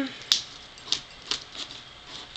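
Plastic sleeve pages of a DVD binder case being flipped through: a few sharp clicks and light rustles at irregular intervals.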